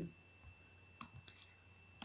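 A single faint computer mouse click about a second in, over near silence, as 'Copy' is chosen from a right-click menu.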